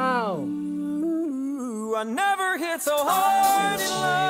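Male a cappella vocal group singing in close harmony, with no instruments. Right at the start a voice slides up and back down over a held low bass note, and then the voices move through short melodic phrases.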